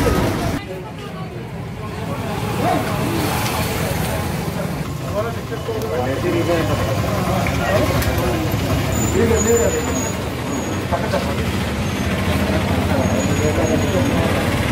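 Indistinct voices of people talking over a steady low rumble.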